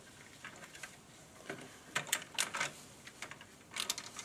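Plastic beehive frame being pulled apart into its two halves, the plastic clicking and snapping: a cluster of sharp clicks about two seconds in and another just before the end.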